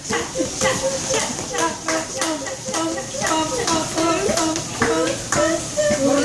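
Voices humming or singing a wordless tune in short held notes that step up and down, over a regular beat of sharp taps.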